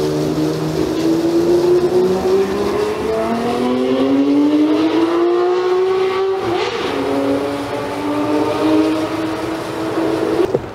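Pressure washer running while spraying brick paving: a steady motor hum with spray hiss. The hum's pitch climbs slowly for about six seconds, dips, then holds steady.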